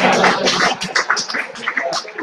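An audience laughing, with scattered clapping, loudest at first and dying away.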